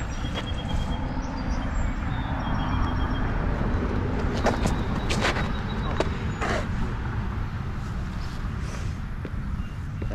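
Steady low outdoor rumble, with a few short scuffs and knocks around the middle as a disc golf drive is thrown from a concrete tee pad.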